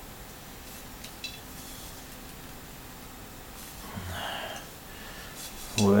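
Faint clicks of a brass lamp-holder being twisted onto the neck of a pottery lamp base, then a short breathy exhale about four seconds in.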